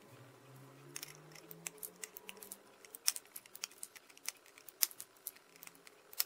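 Side cutters snipping the excess component leads off the underside of a soldered circuit board: a quick, irregular run of sharp clicks, one snip after another, starting about a second in.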